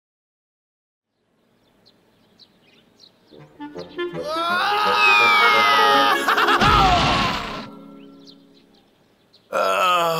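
Cartoon soundtrack: music fades in, then a long descending whistle of something falling ends in a deep thud as a character crash-lands. A groaning voice starts near the end.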